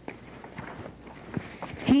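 A pause in a lecture room: steady low hum with a few faint short clicks, then a man's voice starts near the end.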